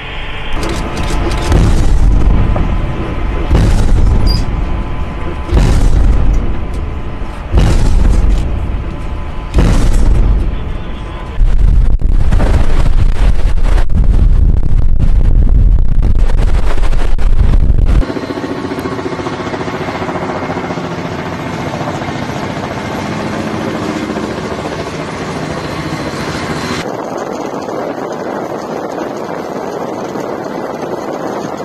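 Warship guns firing during a naval exercise: a run of heavy booms about two seconds apart, then a sustained burst of rapid fire lasting about six seconds that cuts off abruptly. After it, a quieter steady rushing noise with a faint hum carries on, changing near the end.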